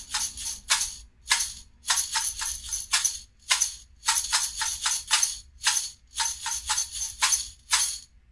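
A homemade shaker, a lidded glass jar partly filled with dry granular filling, shaken in a rhythmic pattern. It makes crisp, short rattling strokes, some single and some in quick runs of two or three.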